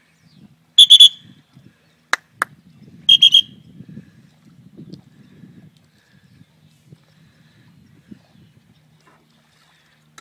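Two short, loud blasts on a dog-training whistle, about two seconds apart, each a high pitched trill. They signal a swimming retriever. Two sharp clicks fall between the blasts.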